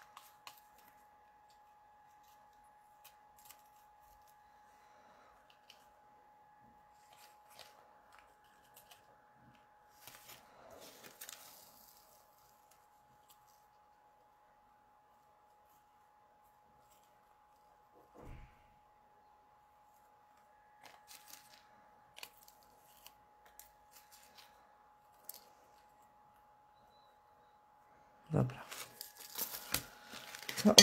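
Faint, scattered rustles and light taps of paper card and craft materials being handled and glued on a wooden table, over a faint steady high hum. A louder knock comes near the end.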